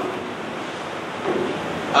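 A pause in a man's speech filled with a steady hiss of background noise from the recording, with a brief faint vocal sound about a second and a half in.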